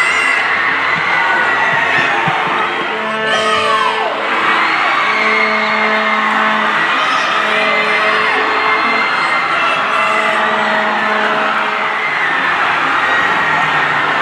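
Music playing loudly with held notes, under a crowd cheering and whooping.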